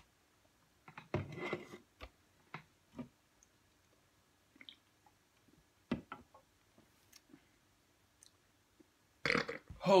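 Faint sounds of someone drinking energy drinks from aluminium cans: scattered light clicks and taps from the cans on the desk, and a short sound from the throat about a second in. A voice starts near the end.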